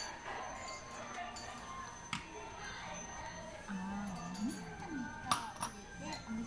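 Restaurant background of soft music and distant voices, with light clinks of tableware about two seconds in and again just after five seconds as dishes and chopsticks are handled at the table.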